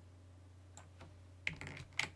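Computer keyboard and mouse clicks: a couple of faint clicks, then a quick run of keystrokes about a second and a half in and a sharp click at the end, over a faint steady low hum.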